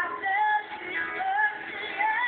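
A boy singing a melody with a live band accompanying him, his voice sliding between notes.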